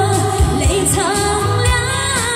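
A woman sings a Chinese pop ballad live into a microphone over a backing track with a steady drum beat.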